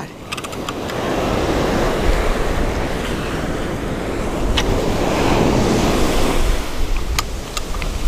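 Surf breaking and washing up the beach, with wind buffeting the microphone in a deep rumble. A few sharp clicks come through in the second half.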